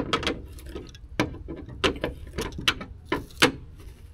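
A series of irregular sharp clicks and knocks, about a dozen in four seconds, over a steady low rumble.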